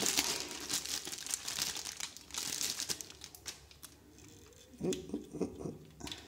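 Thin clear plastic bag crinkling as hands pull it off a pair of sunglasses. It is busiest in the first three seconds or so and dies down after.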